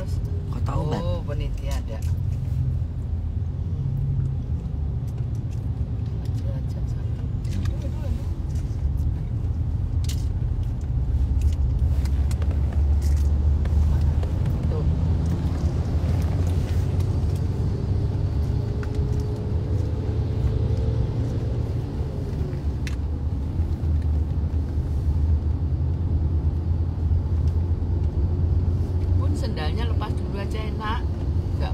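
Low, steady rumble of a car heard from inside its cabin, growing louder for a few seconds about eleven seconds in.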